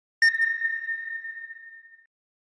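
Sonar-style ping sound effect laid over a radar sweep: a single high, clear ping that starts a moment in and rings away slowly over nearly two seconds.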